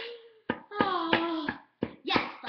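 Irregular sharp taps and scrapes of a small chisel chipping into a plaster dinosaur-egg excavation block on a metal tray. A voice gives a short falling vocal sound partway through.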